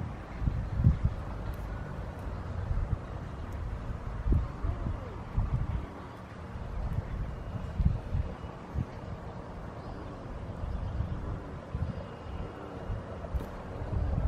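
Wind buffeting the microphone outdoors: an uneven, gusting low rumble with a faint rustling hiss above it.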